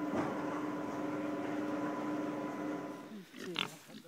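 Steady outdoor background noise with a faint low hum, then near the end a short grunt from pigs.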